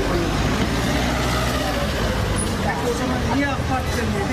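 Street noise: a steady rush of traffic under men talking in a group.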